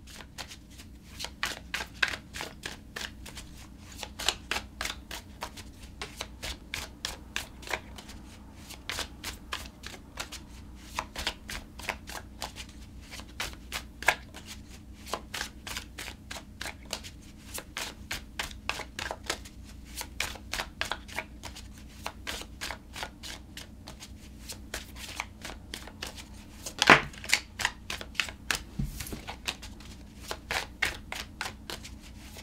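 A deck of tarot cards being shuffled overhand, hand to hand: a steady run of quick papery clicks and slaps, several a second, with a louder burst near the end.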